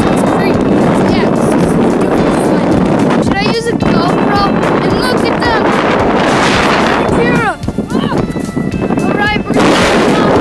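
Strong wind buffeting the microphone, loud and steady, with a brief drop about seven and a half seconds in. Several short, high, sliding calls cut through it now and then.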